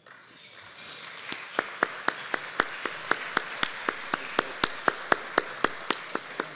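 Audience applause that swells over the first second, with one person's hand claps close to the microphone standing out sharply at about four a second.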